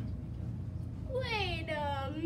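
A child's voice in drawn-out cries that fall and waver in pitch, starting about halfway through, after a short quiet stretch.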